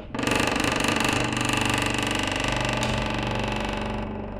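A loud, rapid mechanical rattling buzz over a steady hum. It starts abruptly and eases off slightly near the end.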